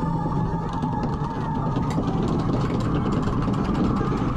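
Theme-park dark-ride vehicle moving through a tunnel: steady running noise of the ride, with ride music underneath and a fast run of light clicks through the middle.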